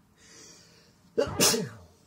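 A man sneezing: a drawn-in breath, then one loud sneeze a little over a second in.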